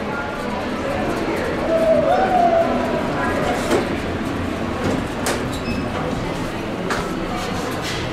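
Otis traction elevator arriving and its sliding doors opening, over a steady background of voices, with a couple of sharp clicks in the second half.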